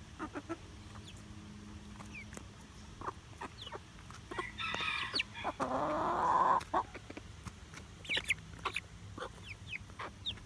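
Hens clucking and giving short calls while they peck, with a louder, longer call a little after the middle. Short high chirps follow near the end.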